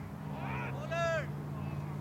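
Two short shouted calls, about half a second and a second in, over a steady low hum.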